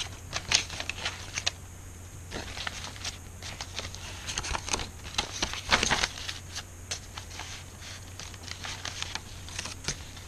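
Paper rustling, crinkling and light tapping as journal pages are turned and paper pieces are handled, with a denser burst of rustling about six seconds in.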